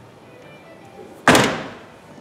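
The trunk lid of a 2014 Infiniti Q50S being shut: one loud thunk about a second and a quarter in, dying away over about half a second.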